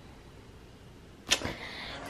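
Low, quiet room noise, then a single short, sharp swish a little past halfway through.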